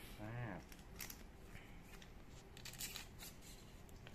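Faint scattered clicks and light rustling of bicycle-frame packaging being handled: plastic parts bags and cardboard.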